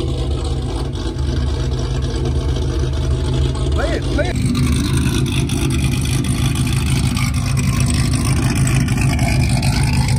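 A vehicle engine idling steadily with a low rumble.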